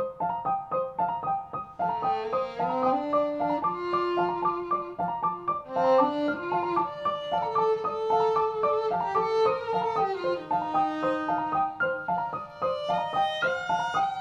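Violin and digital piano playing together in a live instrumental passage. The piano repeats a steady pattern of short notes while the violin enters about two seconds in with long held melody notes, climbing higher near the end.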